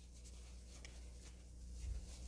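Faint scratchy rustles of a metal crochet hook drawing cotton yarn through stitches, a few soft strokes over a low steady hum.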